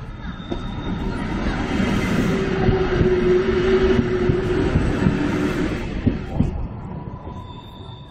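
Mont-Blanc Express electric train passing close by: a rumble that swells and then fades, with the wheels clacking over the rail joints as the cars go past.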